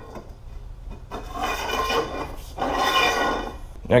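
A metal pipe scraping as it is slid through the motorcycle's frame, in two long strokes with a ringing tone from the pipe.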